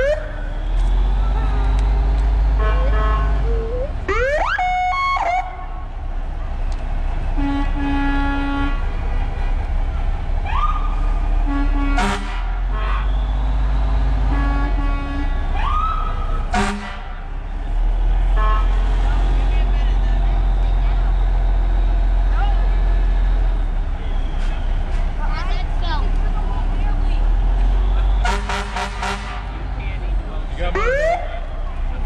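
Parade vehicles going by: a heavy engine rumbling low and steady, short rising siren whoops, and horn toots near the middle and again near the end, with two sharp bursts between them. People's voices run underneath.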